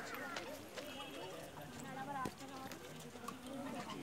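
Background voices of many people at a distance, chatting and calling out over one another, with scattered faint clicks.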